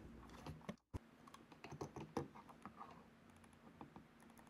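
Faint scattered clicks and light scrapes of a small screwdriver driving a screw into the plastic base of a computer mouse, with the mouse being handled; the clicks bunch together around two seconds in.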